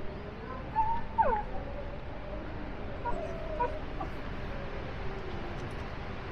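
An animal's short, high squeaky calls with quick pitch slides, about a second in and again around three seconds in, over a steady low rumble.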